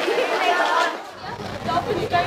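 Speech: people in a group talking and chatting. A little past halfway a low rumble comes in under the voices.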